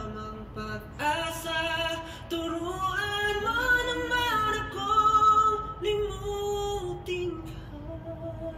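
A male pop singer singing a slow ballad without accompaniment, the melody gliding between long held notes.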